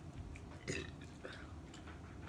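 Quiet close-up eating sounds of people chewing pizza and wings, with faint mouth clicks and one short throaty sound a little under a second in.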